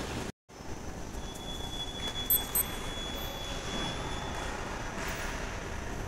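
Hyundai S Series escalator running with a steady mechanical hum, interrupted by a brief dropout to silence just after the start. A faint high whistle comes in and fades out, and about halfway through two short, sharp high beeps sound in quick succession.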